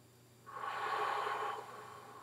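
A man lets out one deep breath. It starts about half a second in, is loud for about a second, then trails off.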